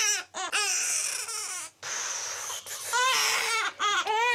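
Newborn baby crying: a run of high-pitched wails broken by short gasps for breath, one of them hoarse.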